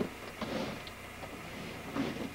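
A few faint, light clicks from hands handling the monitor and its cable, over quiet room noise.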